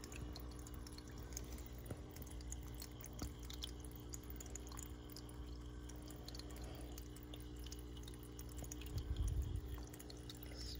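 Faint aquarium water trickling and dripping over a steady low hum of the tank's running equipment, with a brief low rumble near the end.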